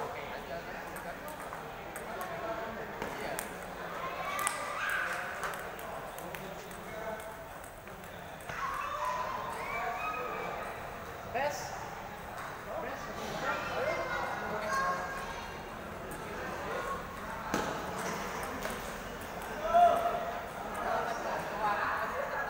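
Table tennis balls clicking off bats and tables in rallies, with other tables' clicks mixed in, over a steady hubbub of crowd chatter in a large hall. A few knocks stand out, the loudest a couple of seconds before the end.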